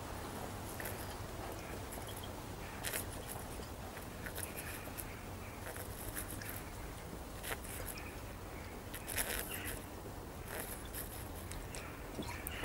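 A man gulping and swallowing as he drinks straight from an upturned glass bottle, heard as faint, irregular gulps over a steady low background noise.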